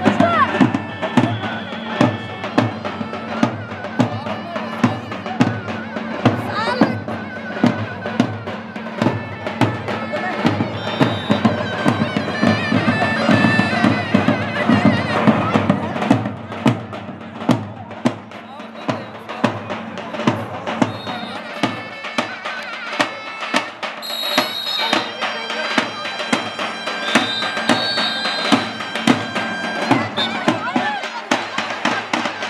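Davul and zurna playing traditional wrestling music: a shrill double-reed zurna melody over steady, regular strokes of the big two-headed davul drum.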